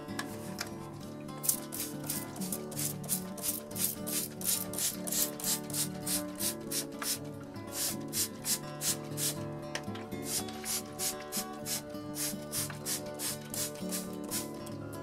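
Hand-pumped plastic spray bottle of water squirted in quick repeated sprays, about three to four a second, wetting down model-railroad ground foam. Background music plays underneath.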